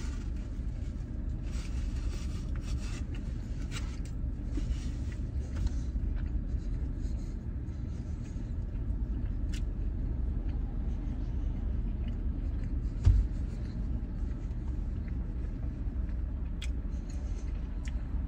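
Steady low rumble of a car cabin with the vehicle idling, under faint chewing and rustling sounds of a man eating a barbecue rib. A single low thump comes about two-thirds of the way through.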